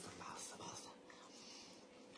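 Near silence: quiet room tone with a faint breathy hiss as the voice trails off.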